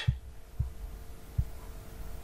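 Room tone in a pause between words: a steady faint hum with low rumble, broken by three soft low thumps.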